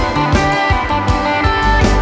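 Live rock band playing: a PRS electric guitar holds sustained lead notes over bass and a steady drum beat.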